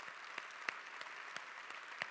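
Audience applauding: a steady patter of many hands with a few sharper single claps standing out.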